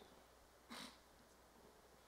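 Near silence: room tone in a hearing chamber, with one brief soft hiss about three quarters of a second in.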